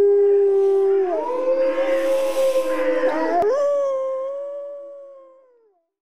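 Wolves howling: a long, steady howl ends about a second in, then a higher howl with a lower one overlapping it, and a last howl that rises, slides slowly down and fades out near the end.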